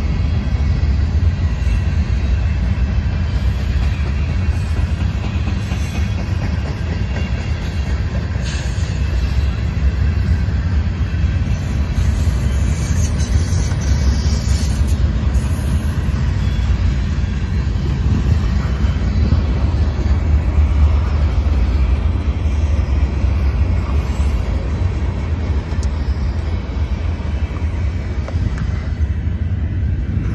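Freight train of flatcars loaded with large steel pipe rolling steadily past at close range: a continuous low rumble of wheels on rail, with a brief hiss rising above it about halfway through.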